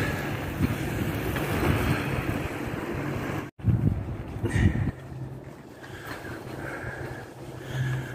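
Inline skate wheels rolling on wet asphalt, a steady noisy hiss with wind buffeting the microphone. After an abrupt cut about three and a half seconds in, gusts of wind rumble on the microphone, then it settles to quieter wind with a faint steady low hum.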